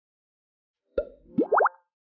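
Cartoon-style editing sound effect: a plop about a second in, then three quick upward-sliding boings in rapid succession.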